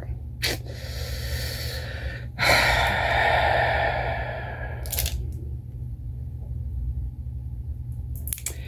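A person's breath: a soft breath, then a long, louder breathy exhale of about two and a half seconds, with small clicks before and after, over a steady low hum.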